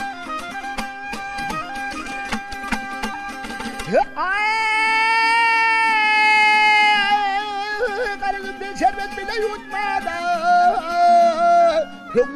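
Turkmen folk song: a dutar strummed rapidly, then about four seconds in a man's voice comes in on a loud, long held high note that begins to waver into ornamented runs over the dutar.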